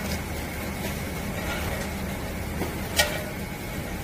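Steady low mechanical hum, with soft handling of spinach leaves being tossed by hand in a stainless steel bowl and a single sharp click about three seconds in.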